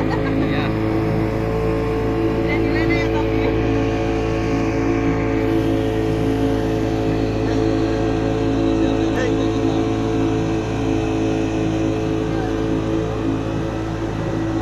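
Two-stroke outboard motor running steadily at cruising speed, pushing an open boat, with the rushing hiss of the wake and water along the hull.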